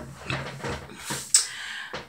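Handling noise from a phone being shifted and repositioned: rubbing and rustling with a short hiss, then a single sharp knock about one and a half seconds in.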